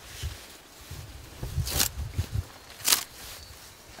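A freshly peeled strip of red cedar bark being bent by hand to crack the outer bark loose from the inner bark. There are two sharp cracks, a little under two seconds in and about three seconds in, over a low rumble of handling noise.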